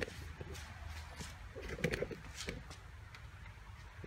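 Faint handling noise: a few scattered light clicks and taps over a low steady hum.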